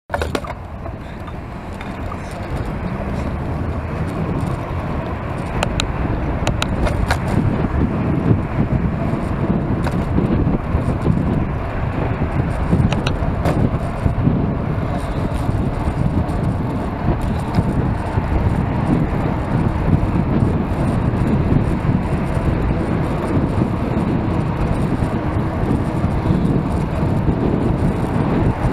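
Wind rushing over a bicycle-mounted camera's microphone mixed with passing car traffic, growing louder over the first several seconds as the bike speeds up from walking pace to about 30 km/h, then holding steady. A few sharp clicks come through in the first half.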